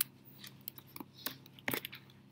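A few sharp clicks of a computer mouse, the loudest right at the start and a quick pair about three-quarters of the way through.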